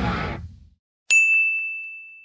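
Intro music fading out, then a single high-pitched ding, a bell-like sound effect that rings on and slowly dies away.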